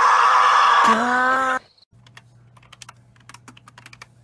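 A loud, wavering scream whose pitch falls, breaks off about a second in, starts again on a steadier pitch and cuts off suddenly before halfway. Then comes faint, irregular computer keyboard typing and clicking over a low electrical hum.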